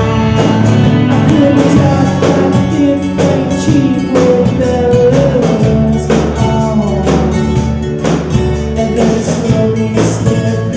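A live band playing a country song: electric guitars, bass and drum kit with a steady beat.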